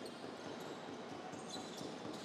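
Basketball being dribbled on a hardwood court in a sports hall.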